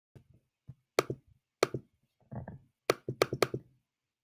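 A series of irregular sharp knocks and taps, each with a short ring, the loudest about a second in and a quick run of three near the end.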